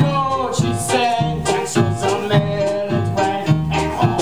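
Upbeat accompaniment for a musical-theatre song, with a bouncing bass note about twice a second under a moving melody.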